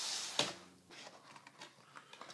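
Cardboard packaging being handled: a short scraping hiss as the inner box slides out of its sleeve, with a light tap about half a second in, then faint rustles as the lid is opened.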